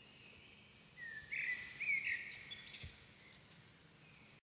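Faint ambient hiss with a brief cluster of bird chirps, a few quick gliding calls starting about a second in and lasting just over a second.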